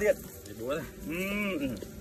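A single drawn-out vocal call a little after a second in, about half a second long, rising then falling in pitch, with a shorter voiced sound just before it.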